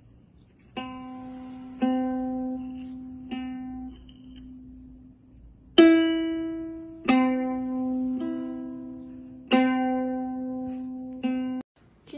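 A cat pawing at a ukulele's strings, sounding about eight single plucked notes one at a time at uneven intervals, each ringing on and fading. The last note is cut off suddenly near the end.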